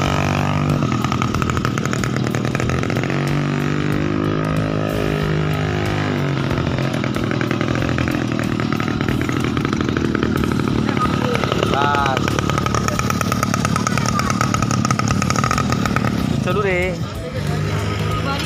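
Small petrol engine of a homemade motorized bicycle running steadily as it is ridden, with people's voices in the background.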